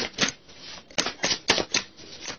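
Tarot cards being shuffled by hand, the deck giving a run of sharp, uneven clicks and slaps, about four a second.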